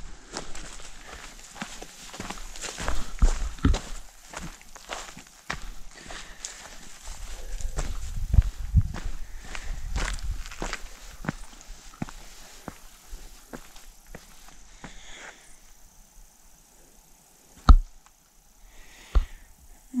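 Footsteps of a hiker walking on a leaf-littered forest trail and onto bare rock, an uneven run of scuffs and thuds that stops a few seconds past the middle. Two sharp knocks follow near the end.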